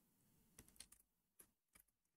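Faint computer keyboard typing: a quick run of keystrokes about half a second in, then a few single ones near the end.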